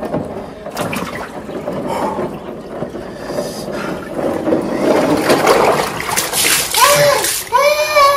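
Ice water sloshing and splashing in a plastic drum as a man lowers himself into an ice bath. Near the end come two drawn-out vocal cries from the cold.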